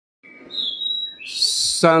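High-pitched chirping whistles: a short note, then a held whistle that wavers slightly, then a brighter, hissier trill.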